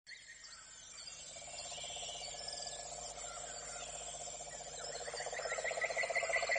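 Nature ambience fading in and growing louder: birds chirping over a fast, pulsing trill. Near the end a run of short rising chirps repeats about three times a second.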